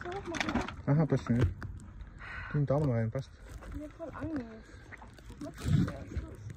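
People talking in short phrases, with brief pauses between them.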